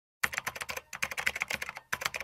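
Rapid keyboard typing: quick runs of key clicks that begin a moment in, with two short pauses.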